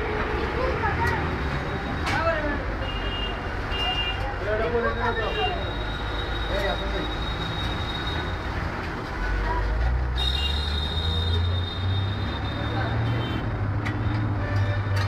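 Busy street ambience: background voices, thin steady high beeping tones, and a vehicle engine rumble that grows louder about nine seconds in.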